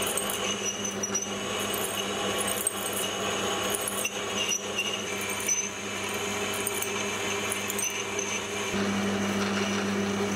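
Metal lathe running while a grooving tool cuts a retaining-ring groove into a turned steel shaft. It gives a steady motor hum with a thin high whine from the cut and scattered small ticks of chips. The low hum grows louder about nine seconds in.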